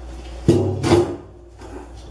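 Strap clamp being handled and knocked against the stainless sink as its webbing is threaded and tightened: a sharp knock about half a second in, a second, shorter clatter just before one second, then softer handling.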